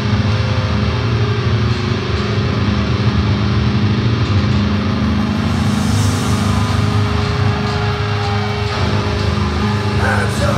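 Heavy, distorted electric guitar and bass played loud, with low chords held and droning and no clear drumbeat.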